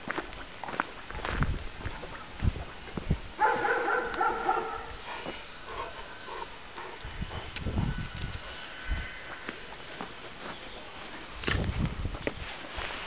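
Caucasian Shepherd dogs at play, one giving a short high whining cry about three and a half seconds in, among scattered scuffs and low thumps.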